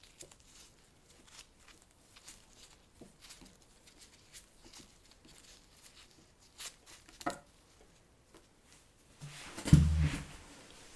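Faint rustling and light clicks of nitrile-gloved hands handling an electric sharpener's power cord, with a couple of sharper ticks a little past the middle. Near the end there is a loud low thump with a shuffle, as a chair is pushed back when the person gets up.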